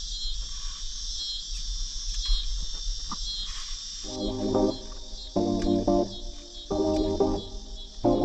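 Insects chirring steadily in a high, lightly pulsing drone. About halfway through, background music with short repeated chords comes in and becomes the loudest sound.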